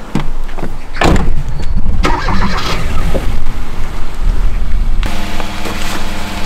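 A car door shuts about a second in, then the sedan's engine starts and runs. From about five seconds in the engine idles with a steady low hum.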